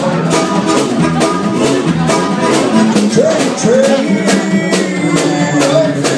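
Live band playing: electric guitar and a drum kit keeping a steady beat, with a lead melody line that bends up and down in pitch.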